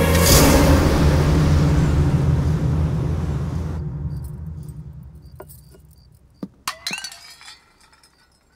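A loud dramatic film sound-effect swell, a rushing surge over a low drone, that peaks about half a second in and dies away over the next few seconds. Near the end come a few sharp metallic clinks of a steel tumbler.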